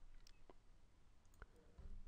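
Near silence with a few faint, short clicks scattered through the quiet.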